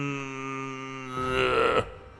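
A man humming through closed lips: one long, low, steady hum that swells louder and strained near the end, then breaks off, acting out a paralysed man forcing a hum out through his nose.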